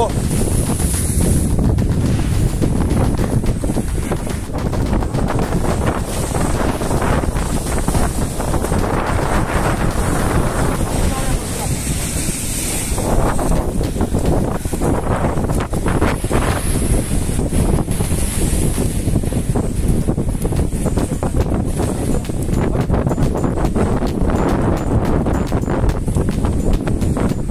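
Strong wind buffeting the microphone in a steady, loud rumble, with sea surf breaking beneath it.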